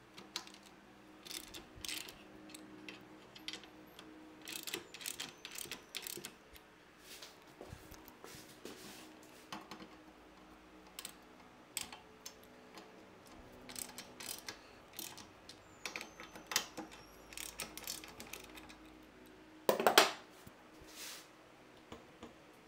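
Irregular clicks and light metallic knocks from hand tools and the rack's bolts and fittings being handled on the motorcycle, with a louder rattle about twenty seconds in.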